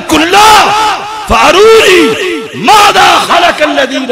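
Loud chanted shouting over a loudspeaker: a man's voice in short phrases that rise and fall in pitch, with crowd voices joining in.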